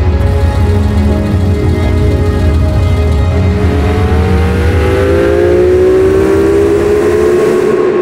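Air-cooled Porsche 911 flat-six engine with a deep rumble, revving up from about halfway through with a long, steady rise in pitch as it accelerates.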